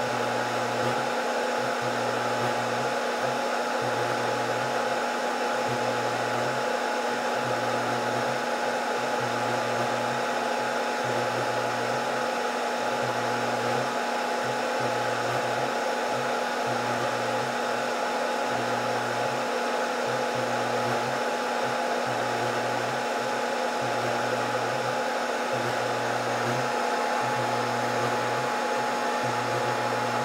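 Scotle IR360 rework station running a reflow preheat: a steady whoosh of its hot-air blowers and fans, with a faint steady whine. Under it a low hum cuts in and out about every second.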